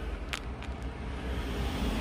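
Passing road traffic: a vehicle approaching along the road, its tyre and engine noise growing louder over a steady low rumble, with one faint click early on.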